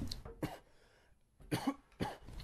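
A man coughing twice after inhaling a thick hit of bong smoke: once about half a second in and again near the end.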